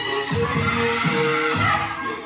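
Reggaeton dance track playing loud, with a heavy, repeating bass beat.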